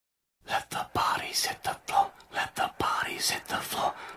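A whispered voice in short phrases, starting about half a second in, with a few sharp clicks between them.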